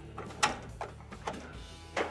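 Electric range control knobs being pulled off their infinite-switch shafts, giving a few sharp clicks. The loudest click comes about half a second in, over faint background music.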